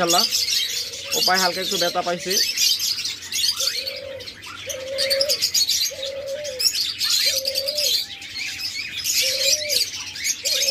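A diamond dove cooing: a run of about six short, level coos of one pitch, roughly one a second, beginning about three seconds in. Constant high chirping from small cage birds runs underneath.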